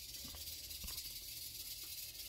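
Quiet room tone: a faint steady hiss with a low hum and a couple of soft ticks.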